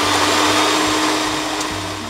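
Handheld electric mixer running steadily, its beaters whipping egg whites in a glass bowl: a steady motor whir with a constant hum, easing off slightly near the end.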